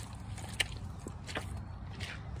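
A husky lapping water from a puddle: a few short wet laps at irregular intervals over a steady low rumble.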